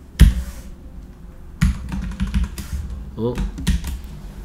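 Computer keyboard keystrokes: a handful of separate key presses spread over a few seconds, typing a short correction into a line of text.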